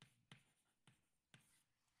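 Faint taps of chalk on a blackboard: four short ticks spread over about a second and a half.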